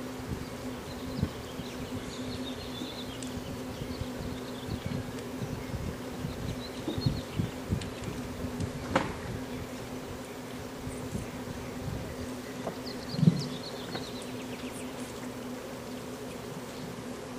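A steady low hum or buzz with scattered soft thumps. There is a sharp click about nine seconds in and a louder thump near thirteen seconds.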